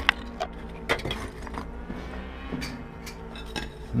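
Loose brick and stone rubble knocking and clinking in a string of short, sharp clicks over a low, steady rumble.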